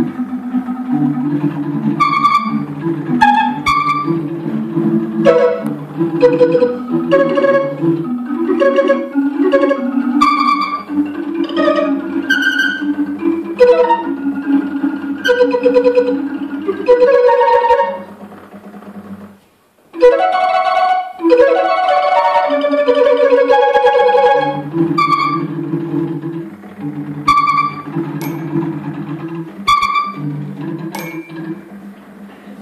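Barrel organ playing held low pipe notes, with two MIDI-triggered carillons of metal bars and tubular chimes striking ringing bell-like notes above them. A little past halfway the music thins out and stops for about two seconds, then resumes.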